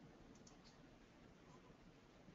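Near silence: faint room tone with a quick cluster of three or four faint clicks about half a second in.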